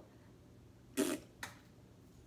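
A woman's short breathy vocal sound, made as an imitation, about a second in, followed by a weaker, briefer one.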